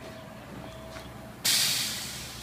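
Sudden loud hiss from the automated immersion parts washer, starting about one and a half seconds in and slowly fading, over a faint steady machine hum.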